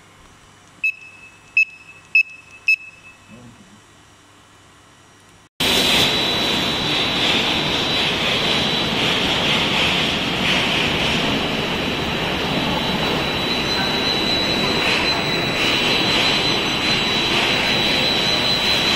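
Four short electronic beeps at one pitch, then a steady loud machine noise with a high steady whine from an enclosed automated laser PCB marking line running.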